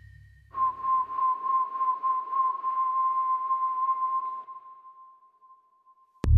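Electronic film score in a sparse break: the low tail of the preceding drums dies away, and about half a second in a single steady, whistle-like tone enters over a grainy, fluttering texture. The texture stops near the end, leaving the tone to fade out alone.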